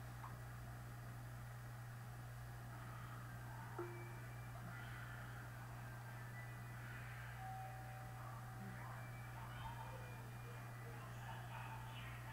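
Quiet room tone: a steady low hum, with faint, indistinct higher sounds and one soft click about four seconds in.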